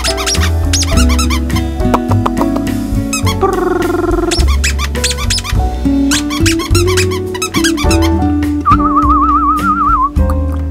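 Background music with a beat and high, squeaky lead notes, ending on one held, wavering note.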